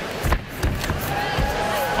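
Arena crowd noise with a held shout, and two dull thumps as the fighters' feet and bodies hit the canvas during a takedown attempt, one near the start and one midway.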